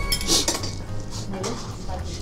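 Metal tongs clinking and scraping against a stainless steel pot and bowl as pieces of meat are lifted out, a few short sharp clinks, over soft background music.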